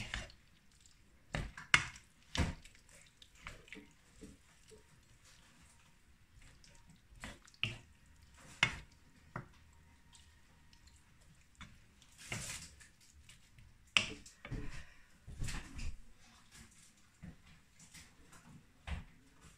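Wooden spoon stirring a thick mince-and-vegetable sauce in a large pan: irregular wet clicks and knocks of the spoon against the pan and food, with quiet gaps between them.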